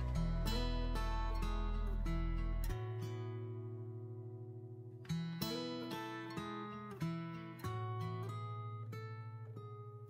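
Background music on acoustic guitar: plucked and strummed chords that ring and slowly fade, with new chords struck about halfway through and again a couple of seconds later.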